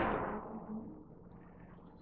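A man's voice trailing off at the end of a word, then faint room tone with a low steady hum.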